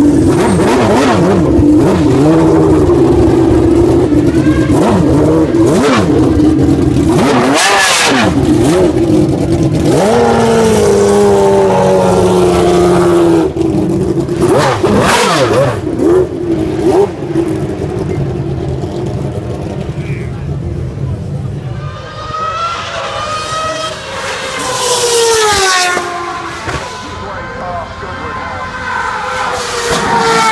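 McLaren Honda Formula One car's engine running loud at low speed, its pitch wavering up and down with throttle blips. From about two-thirds in, a racing car accelerates in a string of rising pitches, each broken off by a gear change.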